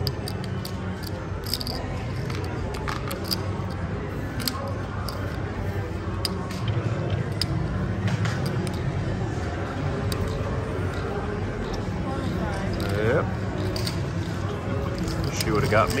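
Casino table ambience: a steady background murmur of voices and machine sounds, with scattered light clicks of cards and chips as the dealer collects the hand and deals new cards. A brief voice-like sweep comes near the end.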